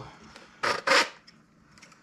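Two short scraping noises about a quarter second apart, the second the louder, as the rocket's 3D-printed avionics sled and its metal rods are handled and pulled apart.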